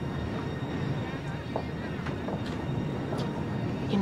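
Television drama soundtrack: a steady low rumble of background ambience with faint indistinct voices.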